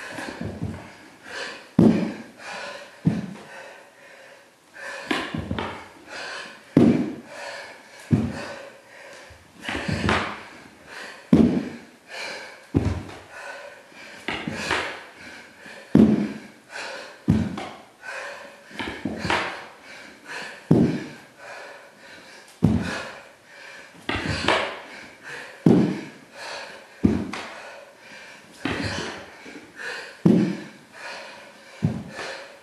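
A person doing burpees on a hardwood floor: a thud about every second and a half as hands and feet land, with hard panting breaths between.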